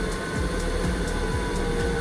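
Steady drone with a faint constant whine from the Boeing 757's auxiliary power unit running on the ramp, while the RB211 engine stands still during the detergent soak of a compressor wash.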